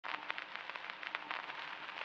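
Faint, irregular crackling: many small clicks over a low hiss.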